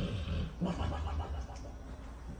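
A sleeping dog snoring: a noisy breath at the start, then a pitched, rattling snore about half a second in that lasts under a second.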